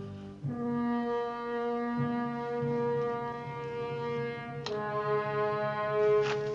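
Orchestral underscore of long held brass notes. The first chord comes in about half a second in and moves to a new chord about four and a half seconds in.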